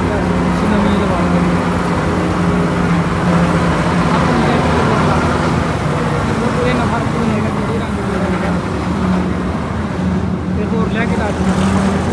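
Vishal Brisk combine harvester's diesel engine running at close range, a steady drone with no breaks.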